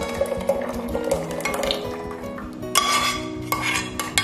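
Liquid poured in a thin stream from a saucepan into a pot of milk, splashing and trickling, with a louder rush of noise about three seconds in. Background music with sustained notes plays throughout.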